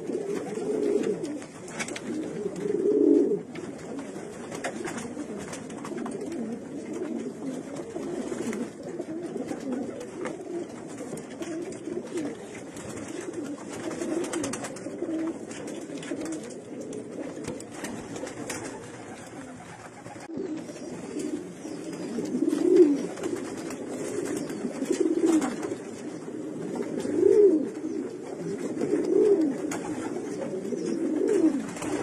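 Racing pigeons cooing: a cock bird's repeated low, rolling coos as it puffs up and turns to court a hen. The loudest coos come in the last third.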